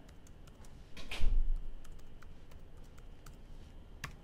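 Typing on a computer keyboard: a run of quick key clicks as an email address is entered. One brief, louder thump comes about a second in.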